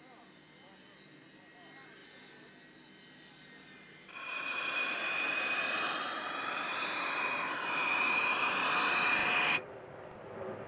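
Jet engine of the IAI Lavi fighter, a Pratt & Whitney PW1120 turbofan, running loud: a rushing roar with a steady high-pitched whine and slowly sliding tones. It starts suddenly about four seconds in and cuts off suddenly near the end, after a faint stretch of distant whine and low voices.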